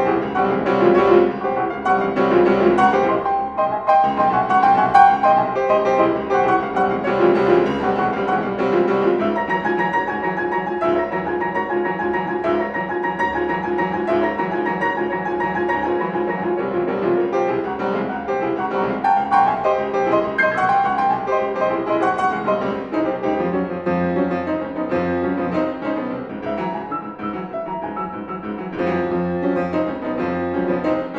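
Two grand pianos playing a contemporary concert piece together in a dense, continuous flow of notes.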